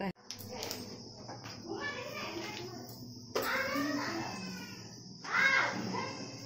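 Indistinct voices, one of them a child's, in three short spells, over a steady high hiss.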